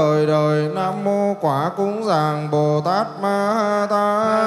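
Melodic Vietnamese Buddhist liturgical chant sung by a male voice, holding long notes that bend up and down in pitch, with short breaks between phrases.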